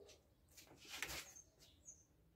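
Faint short high bird chirps over a quiet room, with a soft rustle about a second in.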